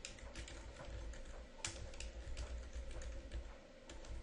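Quiet typing on a computer keyboard: an irregular run of key clicks as a short sentence is typed.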